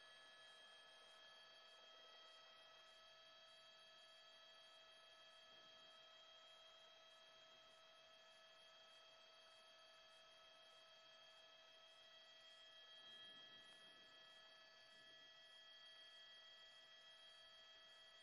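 Near silence: only a faint steady electronic hum of several fixed tones on a dead broadcast feed.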